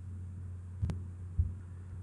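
Steady low electrical hum in a gap between spoken sentences, with one sharp click a little under a second in and a soft low thump shortly after.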